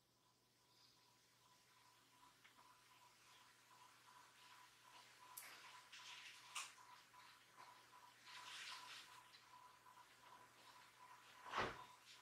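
Near silence: quiet room tone with a faint steady high tone, soft scattered rustles and a light click or two, and one short, louder noise near the end.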